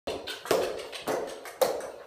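Footsteps in trainers on a rubber gym floor: four sharp steps about half a second apart.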